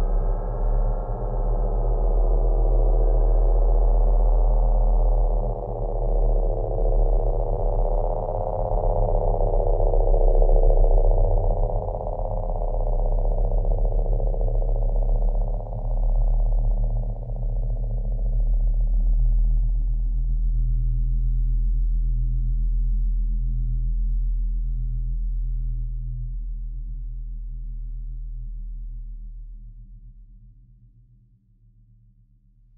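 Psychedelic dark ambient synthesizer drone: a deep, steady bass drone under a higher layer of sustained tones that slowly waver up and down in pitch. In the second half the wavering layer dies away, leaving low steady tones that fade out near the end.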